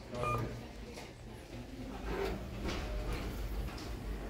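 Kone lift car's floor button beeping once, a short high beep as it is pressed to register the call, over a steady low hum inside the lift car.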